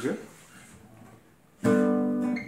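Steel-string acoustic guitar: after a short lull, a full chord is strummed about one and a half seconds in and rings out loudly.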